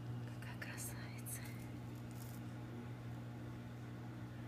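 Steady low hum of a saltwater aquarium's pump equipment, with a few whispered words in the first half.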